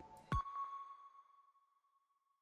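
Short electronic sound logo: a soft low thump about a third of a second in, then a single high ping that rings on and slowly fades away.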